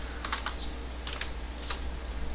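A few light computer keyboard keystrokes, scattered taps as a short search is typed into an application menu, over a low steady hum.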